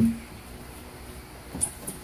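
Quiet room tone, with the end of a man's spoken word at the start and a short spoken word near the end.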